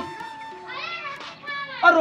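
Low voices talking, quieter than the dialogue around them, with faint music underneath.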